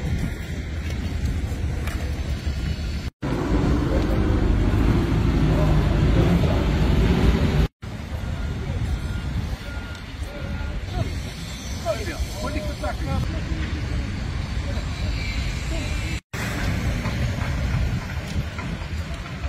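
Heavy construction machinery running on a worksite, a steady low engine noise with faint voices, broken by three abrupt cuts where the sound drops out.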